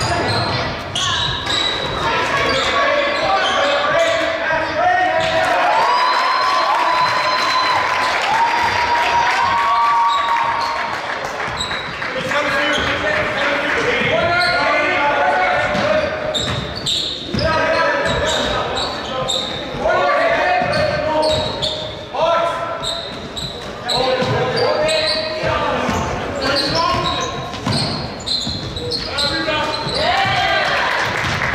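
Basketball being dribbled on a hardwood gym floor during live play, with players calling out to each other, all echoing in a large gym.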